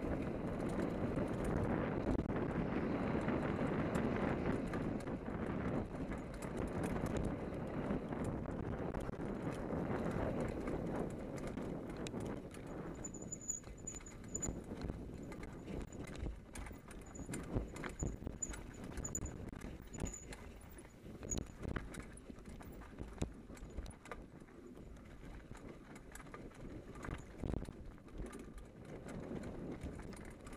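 Hardtail mountain bike descending a dirt forest trail: tyres rumbling over leaves and dirt, with irregular rattling knocks from the bike as it hits bumps. A rushing wind noise on the microphone is loudest in the first third and fades.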